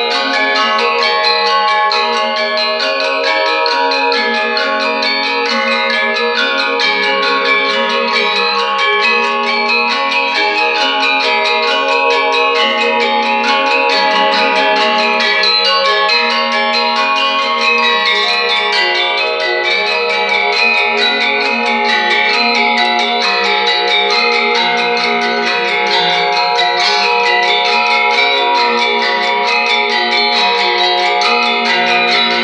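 Balinese gender wayang, several bronze-keyed metallophones over bamboo resonators struck with mallets, playing together in a continuous ringing, bell-like melody. Many notes sound at once, with a moving lower melodic line under them.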